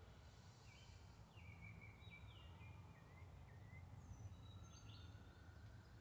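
Near silence with faint birds chirping in the background: short, thin whistled calls, some gliding down in pitch.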